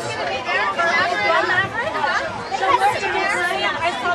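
Several voices chattering and calling over one another, some of them high-pitched.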